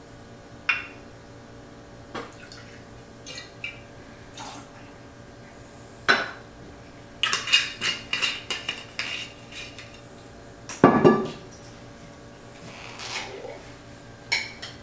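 Bar tools and bottles handled while mixing a martini: scattered clinks of a steel jigger and glass, then a quick run of small clicks as the cap is screwed back onto a glass vermouth bottle. A heavier knock follows as the bottle is set down on the wooden bar.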